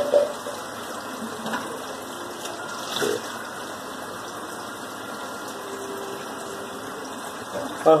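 Tap water running steadily, with a couple of light knocks about a second and a half and three seconds in.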